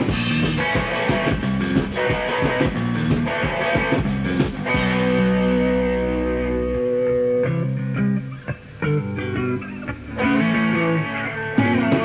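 Punk rock band playing on a mid-1980s demo tape recording: electric guitar and bass. About five seconds in the band holds a chord, the playing thins out around eight seconds, and the full band comes back in near ten seconds.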